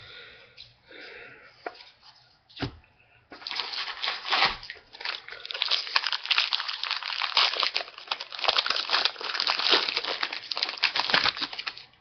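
Trading-card pack's foil wrapper being torn open and crinkled, a rapid crackle that starts about three seconds in, after some quieter handling and a tap, and goes on until near the end.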